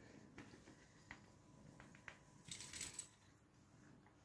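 A brief, quiet metallic jingle about two and a half seconds in, among a few faint small clicks.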